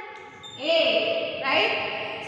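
A woman's singing voice, likely a song laid over the video: long held notes that step from one pitch to another, with a short break about half a second in.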